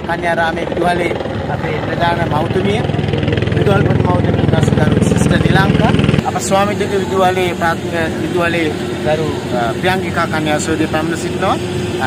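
People talking outdoors over a loud, low, steady rumble that cuts off abruptly about six seconds in; after that the voices continue over a faint steady hum.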